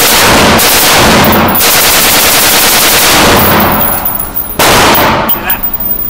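Heckler & Koch G36K 5.56 mm rifle firing on full auto: one long burst of about four seconds, then after a brief break a second short burst of under a second.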